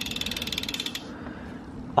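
Bicycle rear freehub ticking as the wheel spins freely while the pedals are turned by hand during a gear-shift test: a rapid, even run of clicks that stops about a second in.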